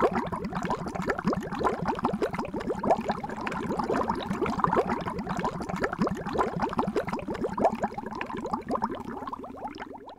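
Underwater bubbling sound effect: a dense stream of bubbles, each a short rising blip, running steadily.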